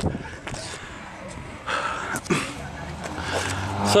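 A man breathing hard after a sprint, with rustling handling noise from a handheld camera and a short vocal sound a little past halfway.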